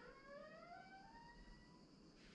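Near silence, with a faint pitched tone gliding slowly upward for nearly two seconds and fading out.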